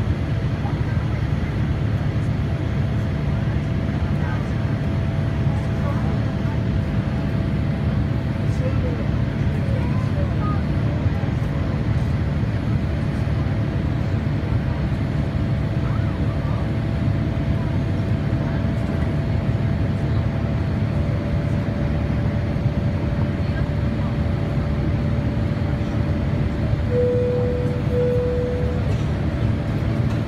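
Steady cabin noise inside a Boeing 787-8 climbing after takeoff: a deep engine and airflow rumble with a faint steady tone over it. Near the end two short beeps of the same pitch sound, a second apart.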